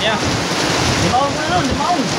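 Loud steady rushing of wind on the phone's microphone, with faint voices of onlookers talking behind it.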